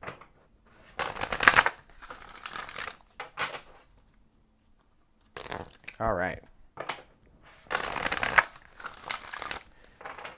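A Lightworker Oracle card deck being shuffled by hand: several rustling shuffles, each about a second long, with short pauses between.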